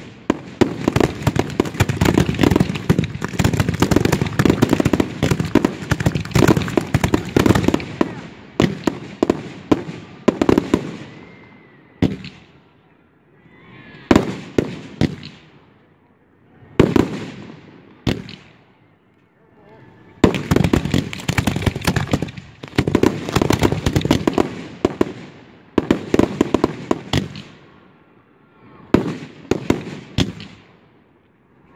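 Fireworks finale cakes firing close by. A dense, rapid volley of shots and bursts runs for about ten seconds. Then come a few single shots, each ringing out and fading over a second or two. A second rapid volley follows, and a couple more single shots near the end.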